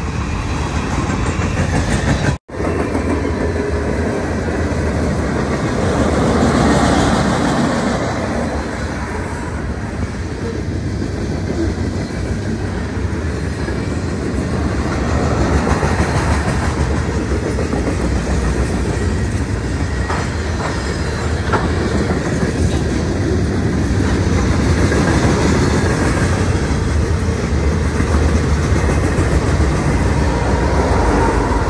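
Norfolk Southern freight train's cars rolling steadily past. The sound cuts out for an instant a couple of seconds in.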